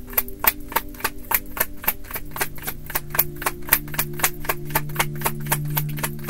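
A deck of tarot cards being shuffled by hand: an even run of sharp card snaps, about five a second, with steady low tones underneath.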